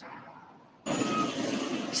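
A quiet moment, then about a second in a sudden cut to the steady noise of trucks and traffic at a road construction site, with a brief faint tone in it.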